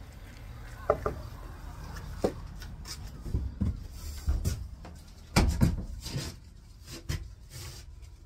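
Knocks and clatter of a plastic portable toilet's door being handled and pulled open, in short separate strikes, the loudest about five and a half seconds in.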